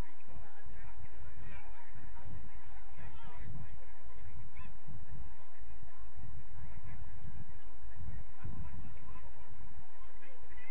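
Wind buffeting the microphone in gusts, with faint distant shouts from players on the pitch wavering over it.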